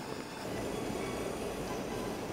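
Tteokbokki heating in a frying pan on a portable gas burner: a steady low rushing, simmering noise that grows a little louder about half a second in.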